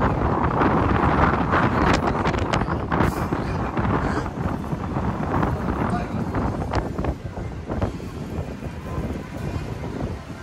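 Wind buffeting an outdoor microphone with a heavy low rumble, under indistinct voices that are loudest in the first few seconds and fade toward the end.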